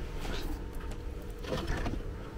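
Stacked paper-pulp egg trays being lifted and shuffled by hand, a faint light rustling and scraping of cardboard.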